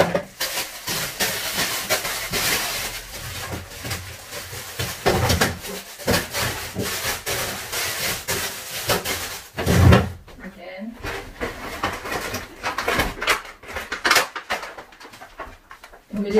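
Plastic food packaging rustling and crinkling as groceries are handled and put away, with scattered clicks and two dull thumps, about five and ten seconds in.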